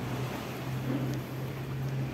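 Steady low machinery hum under an even rushing noise.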